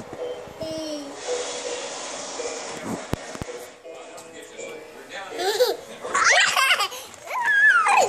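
A toddler laughing and squealing in several high-pitched bursts from about five seconds in. Faint television voices and music lie underneath.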